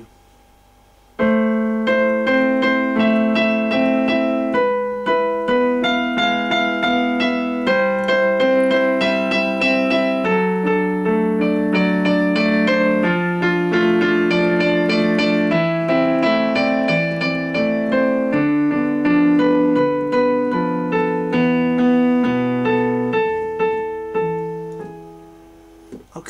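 Digital keyboard with a concert piano sound, played as a slow improvised melody over falling bass chords built around A minor and E major. The playing starts about a second in and dies away near the end.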